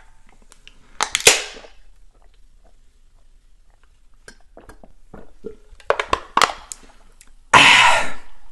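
A soda can pulled open about a second in: a sharp crack followed by a short fizzing hiss. Later come a run of small gulping clicks from drinking, and near the end a loud breathy burst like a cough.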